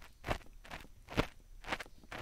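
Ear picks scraping inside both ears of a binaural dummy-head microphone at once, in short, irregular scratchy strokes, four or five of them, the loudest a little past the middle.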